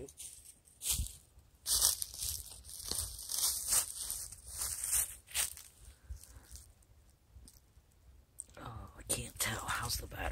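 Rustling and crackling as equipment is handled close to the microphone, with a knock about a second in. It goes quiet for a couple of seconds, then the rustling starts again near the end.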